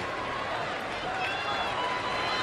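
Steady stadium crowd noise, a mix of many voices in the stands.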